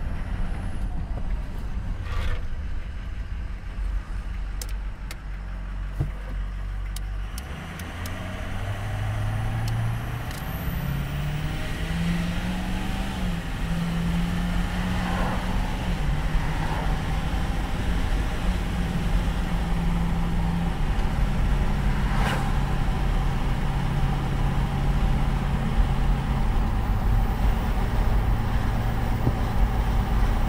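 A 2005 Ford Excursion's 6.0L Power Stroke turbo diesel V8 pulls the truck up to highway speed, heard from inside the cabin over a growing rumble of road noise. Its note rises as it accelerates, then drops in pitch a couple of times as the transmission upshifts.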